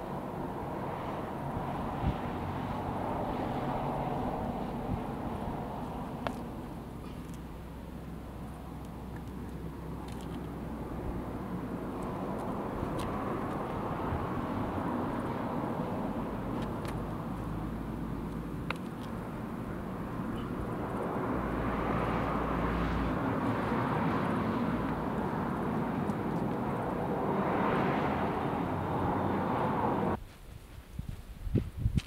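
Steady outdoor background noise with a low rumble, swelling and fading several times in slow waves, with a few faint clicks.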